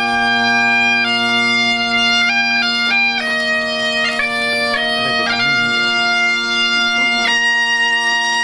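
A Galician gaita (bagpipe) plays a melody that moves from note to note over a continuous steady drone.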